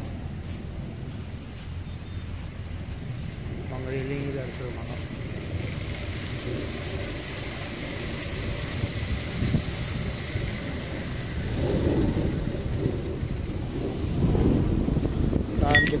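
Wind buffeting the phone's microphone: an uneven low rumble that swells and gusts toward the end, with faint voices under it.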